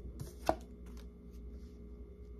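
Tarot cards handled on a table: one sharp tap about half a second in, then a few faint clicks.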